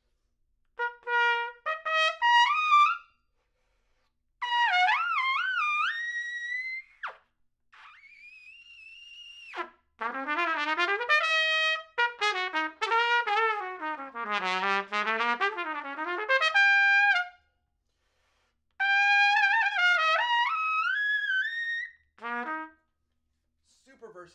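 Adams Hornet hybrid trumpet played with a lead mouthpiece, its adjustable gap receiver backed out one full turn. It plays several short, loud high-register phrases with bends and falls, a long quieter high note, and one long fast run that sweeps down into the low register and back up.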